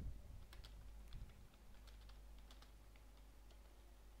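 Computer keyboard typing: a faint run of irregular key clicks, with a dull low bump at the start and another about a second in.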